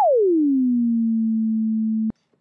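ES2 software synthesizer note: a single clean tone that slides steeply down in pitch over the first half-second or so, then holds steady at a low pitch. Envelope 2 routed to the oscillator pitch is sweeping it down.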